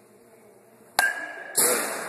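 A youth baseball bat hitting a ball off a batting tee: one sharp ping about a second in, ringing for about half a second, followed at once by a louder noisy crash that fades over about a second.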